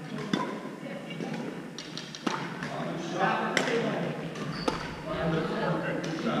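Badminton rally in a large echoing gym: sharp racket hits on the shuttlecock, four in about five seconds at uneven gaps, over overlapping voices of players in the hall.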